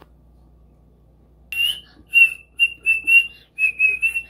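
Quiet for the first second and a half, then a child whistling a string of short, breathy notes all at about the same high pitch, several in a row.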